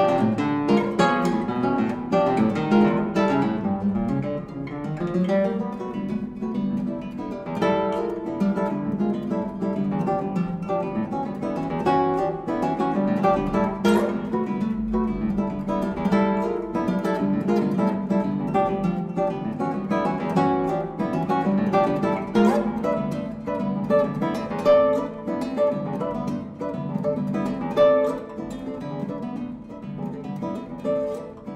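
Nylon-string classical guitar playing a technical study: a continuous flow of quick plucked notes and chords, with one sharp percussive click about halfway through.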